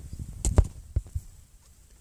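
A few dull knocks and bumps from the handheld camera being swung round and handled, the loudest about half a second in and two smaller ones about a second in.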